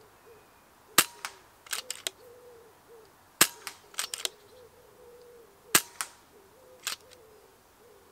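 FX Dynamic Compact PCP air rifle fired three times, about two and a half seconds apart. Each sharp shot is followed by quick clicks of the side lever being cycled to load the next pellet.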